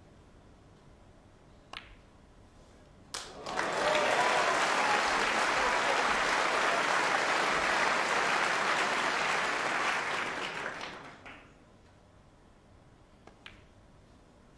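Snooker ball clicks, a sharp click about two seconds in and another about a second later, then audience applause for about seven seconds that fades away. Faint ball clicks come near the end.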